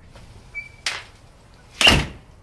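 A front door swung shut and slammed, a loud sharp bang near the end, after a short squeak and a lighter knock about a second in.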